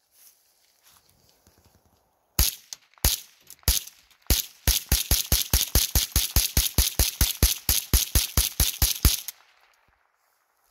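Dlask TUF-22 semi-automatic .22 rimfire rifle firing a full 25-round magazine: three spaced shots starting about two seconds in, then a fast, even string of about five shots a second that stops about nine seconds in when the magazine runs empty, the rifle cycling every round without a stoppage.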